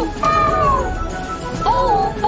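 Small robot pet making two short, cute, synthesized pitched calls over background music: the first falls in pitch, and the second, near the end, rises and falls.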